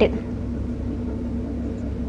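A steady low hum with a faint constant tone underneath, background room noise with no distinct event.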